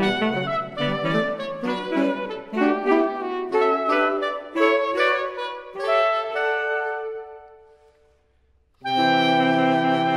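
Saxophone quartet playing short accented chords about twice a second. A held note then dies away into about a second of near silence, and all four come back in together on a loud sustained chord.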